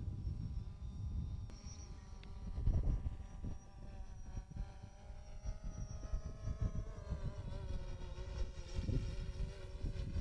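A steady engine hum over a low, uneven rumble, its pitch drifting slightly.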